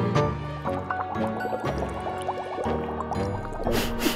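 Cartoon liquid sound effect of quick rising bloops, like chemicals pouring and bubbling, over background music, with a short hiss near the end.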